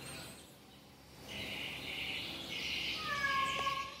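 Faint background birdsong: a steady high chatter for a couple of seconds, then a single drawn-out whistled note near the end.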